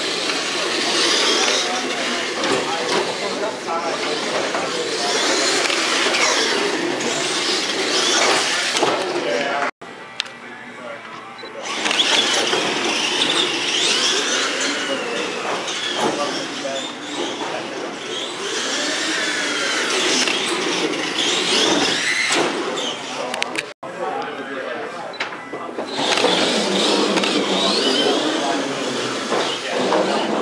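Radio-controlled monster trucks' electric motors and gears whining, rising and falling in pitch with the throttle, over voices chattering in a large hall. The sound breaks off briefly twice.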